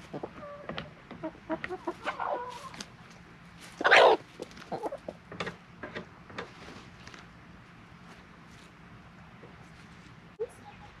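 A flock of hens and a rooster clucking softly while feeding, with one loud, short, harsh call about four seconds in. Scattered short calls and clicks follow, and it goes quieter after about seven seconds.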